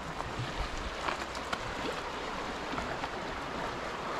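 Shallow river running over rocks and gravel: a steady rush of water.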